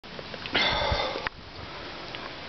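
A single sniff, a short noisy breath drawn in through the nose lasting under a second and ending with a small click.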